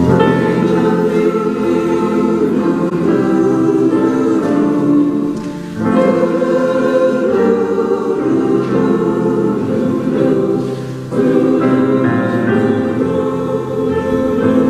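Mixed choir of men and women singing together, entering right at the start, with brief breaks between phrases about six and eleven seconds in.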